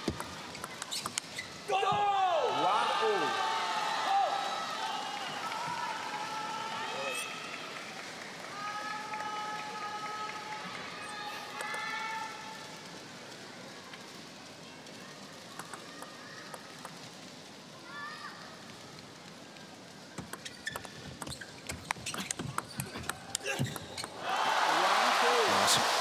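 Arena crowd shouting and chanting between points, then a table tennis rally about twenty seconds in, heard as a quick run of sharp clicks of the celluloid ball on bats and table. The rally ends in a loud burst of cheering and applause near the end.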